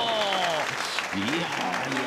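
Audience applauding after a bowling shot, with voices exclaiming over it.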